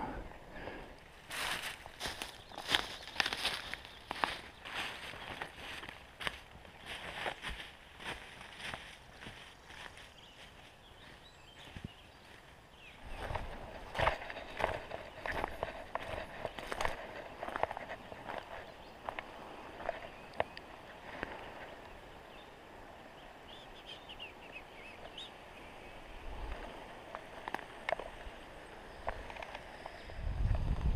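Footsteps on dry leaf litter and twigs on a forest floor, coming in two runs of steps with a quieter stretch between them and a quieter stretch near the end.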